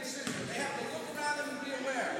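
Children's voices calling out in a large gym, with soccer balls thudding and bouncing on the hardwood floor now and then.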